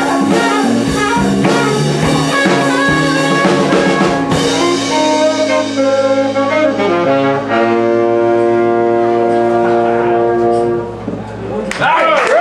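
Live small band with trumpet and saxophone over drums, electric bass and guitar, playing a jazzy tune. It closes on a long held chord that fades out near the end.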